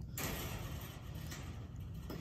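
Steady close rustling of a fleece sleeve and hand rubbing against a silver fox's fur as it is petted.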